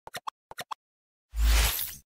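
Logo-intro sound effects: two quick sets of three short clicks, then, a little past the middle, a loud whoosh over a deep boom that fades out.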